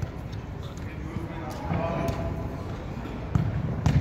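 Futsal ball being kicked and bouncing on a hard indoor court, with two sharp knocks near the end, and players' voices in the background.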